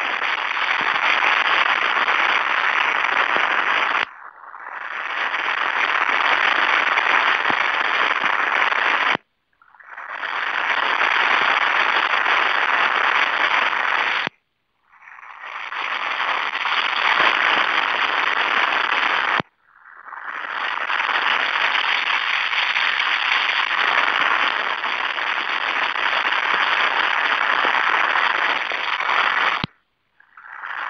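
Loud crackly static hiss on an open telephone conference line. It cuts out abruptly several times, a few seconds apart, and fades back in each time.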